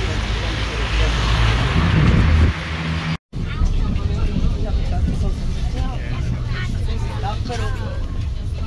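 City street traffic noise: a heavy low rumble of passing cars, swelling about two seconds in. It cuts off abruptly, and then comes the steady low hum of a city bus running, heard from inside the cabin, with passengers' voices chattering faintly.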